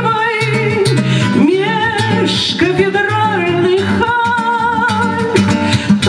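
A woman singing a bard song with vibrato, accompanying herself on a plucked acoustic guitar.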